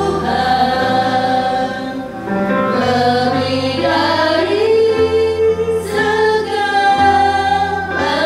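Two women singing an Indonesian worship song into microphones, holding long notes, over musical backing with steady bass notes that change every second or so.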